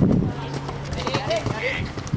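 Hoofbeats of a horse cantering on a sand arena toward a show jump, with people's voices over them.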